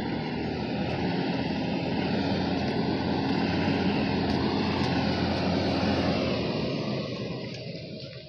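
A motor vehicle engine running steadily with a low hum, dying down near the end.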